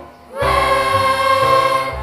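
Children's choir singing, coming in after a brief pause about half a second in and holding a sustained chord.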